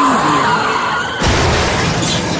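Car tyres screeching in a skid, then about a second in a sudden loud crash as the car hits and rolls over.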